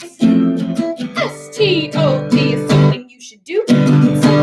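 Small-bodied acoustic guitar strummed in a steady rhythm, with a woman singing over it. The playing breaks off briefly about three seconds in, then resumes.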